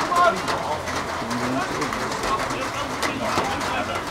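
A pigeon cooing, with players' shouts and a few sharp knocks in the background.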